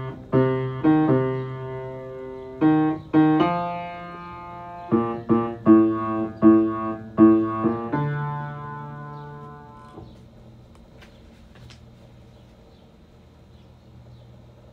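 Piano playing a slow phrase in the low register, notes struck one after another and decaying. The last note, about eight seconds in, is held and fades away by about ten seconds, leaving a faint hush with a few soft clicks.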